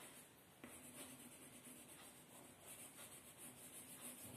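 Faint scratching of light blue colour being shaded onto drawing paper in quick back-and-forth strokes.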